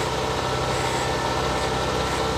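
LOVOL 1054 tractor's diesel engine running at a steady pitch, heard from inside the cab as the tractor drives forward across the field.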